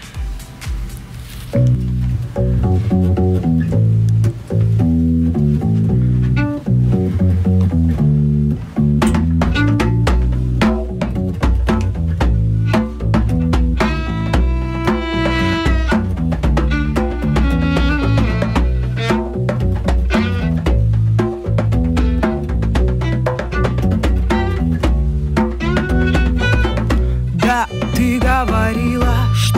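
A small band playing a reggae-style instrumental intro live: an electric bass guitar line starts about a second and a half in, hand-drum strikes join later, and a violin plays a wavering melody over them in the second half.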